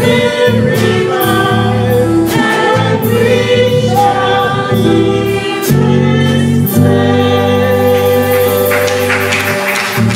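Gospel music: a choir singing over drum kit, keyboard and bass guitar, with cymbal strokes throughout and a low bass note shifting about halfway through.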